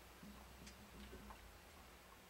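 Near silence: low room hum with a few faint, irregular small clicks from a plastic glue bottle being squeezed and handled.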